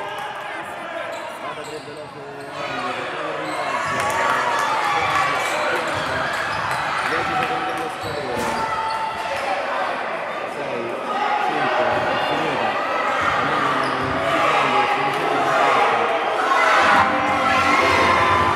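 Live basketball game in a gym hall: a basketball bouncing on the wooden court, mixed with indistinct calls from players and the bench.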